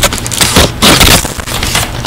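Rummaging through a shopping bag of purchases: loud crinkling and rustling in several bursts, the strongest about half a second to a second in.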